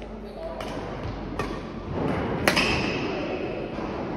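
A few sharp hits of badminton rackets striking a shuttlecock during a rally, about a second apart, the last and loudest about two and a half seconds in, ringing briefly in a reverberant sports hall, with voices in the background.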